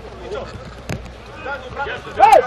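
Players' voices calling across an outdoor football pitch, with one sharp thud about a second in.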